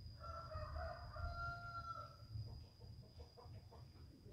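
A rooster crowing once: a single call of about two seconds that ends on a long held note.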